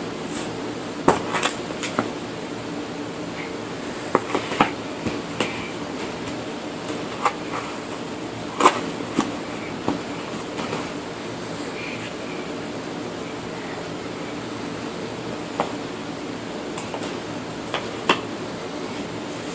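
Puzzle pieces knocking and clicking against an inset puzzle board as they are handled and pressed into place: scattered light taps, some in quick clusters, over a steady background hum.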